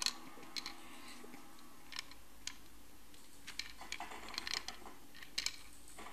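Small ball rolling and knocking inside a handheld plastic tilt-maze puzzle as it is tilted, giving a scattered run of light plastic clicks.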